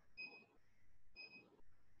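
Two short, faint electronic beeps about a second apart from a digital LED interval timer as its buttons are pressed to set it to count up.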